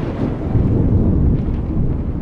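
Thunder sound effect: a deep, continuous rumble.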